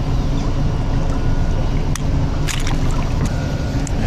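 Boat motor idling as a steady low rumble, with water trickling and a few light clicks.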